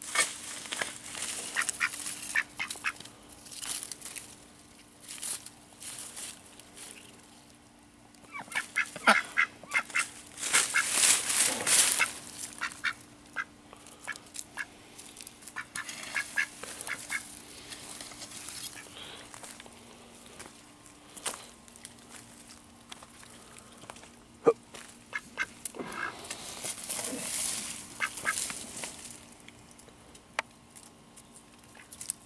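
Pekin ducks quacking in short runs of calls while foraging, with bursts of rustling noise in between.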